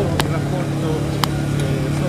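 A motor vehicle engine idling, a steady low hum under the voices of a crowded press scrum. Two sharp clicks come through, one just after the start and one a little past halfway.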